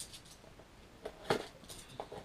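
Handling noise from a cardboard model-kit box being turned over in the hands: a few light clicks and knocks, the strongest just over a second in.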